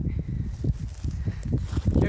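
Low, uneven rumbling noise on the microphone with faint rustling. No shot is fired.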